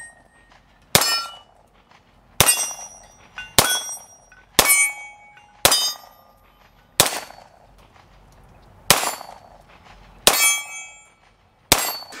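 Beretta 92 GTS Centurion 9mm pistol fired nine times at a slow, deliberate pace, the shots one to two seconds apart. Each shot is followed by a short metallic ring, typical of steel target plates being hit.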